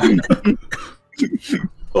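People laughing in short, broken bursts, with a brief pause about a second in.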